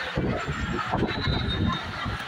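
Strong typhoon wind gusting across the microphone: an uneven, heavy rumble that swells and dips.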